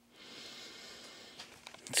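One long, breathy inhalation close to the microphone, lasting about a second and then fading, followed by a couple of faint clicks.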